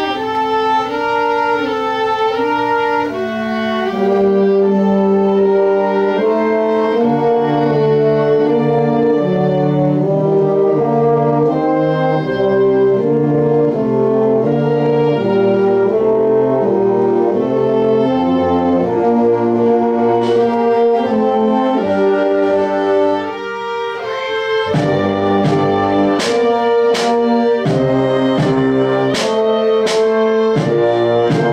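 Small ensemble of brass and bowed strings playing sustained chords that change about every second. About twenty-four seconds in, after a brief pause, sharp percussion strikes join, one or two a second.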